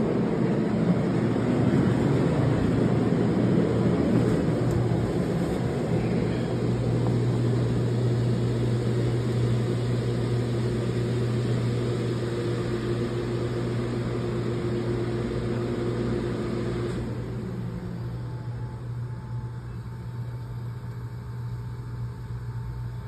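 Steady low machine hum under a rushing noise that drops away about three quarters of the way through, leaving a quieter hum.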